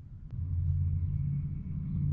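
Low, steady vehicle engine rumble that comes up about half a second in and holds steady.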